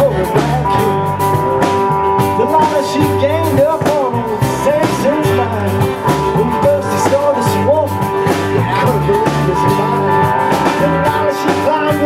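Live rock band playing an instrumental passage: electric guitar notes bending up and down over held chords, a steady bass line and cymbals.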